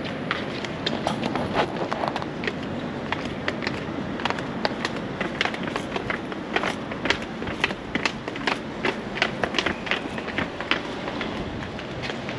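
Footsteps of a person walking briskly on a paved outdoor ramp, about two steps a second, over a steady background hiss.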